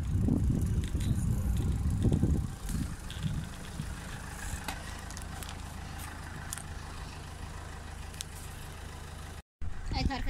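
Low rumbling on the phone's microphone for the first couple of seconds, then a steady low hum of a car engine running nearby.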